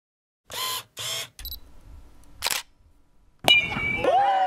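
Camera shutter sound effects: short shutter clatters about half a second and one second in, a fainter click, another clatter about two and a half seconds in, then a sharp click followed by a steady high beep near the end.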